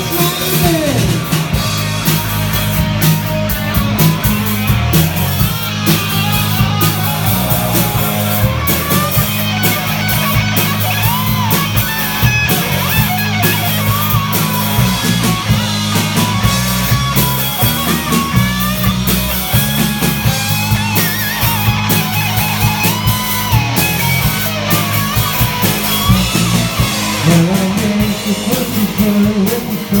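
Live rock band playing loud and without a break: electric guitar over a steady bass line.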